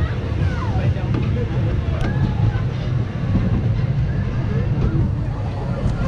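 Pinfari steel roller coaster train rolling along its track toward the station, a steady low rumble with wind buffeting the microphone. Riders' voices call out over it.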